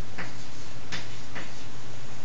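Chalk on a blackboard as a short word is written: a few sharp ticks of the chalk striking and dragging on the board, over a steady low hum.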